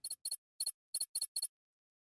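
Short, high-pitched electronic chirps, six in about a second and a half, each a quick double blip. This is a computer-style sound effect as on-screen title text types out.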